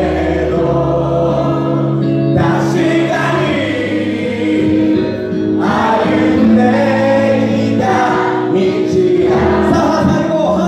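A man singing into a microphone while a crowd of voices sings along. The notes are long and held, in phrases that break about every three seconds.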